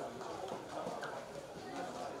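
Indistinct voices of several people talking, with scattered sharp clacks.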